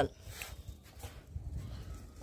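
Faint light taps and scuffs on concrete: a small puppy's paws scampering after a ball rolled across the floor.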